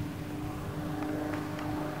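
A distant engine running with a steady hum that holds one pitch, over a low wind rumble.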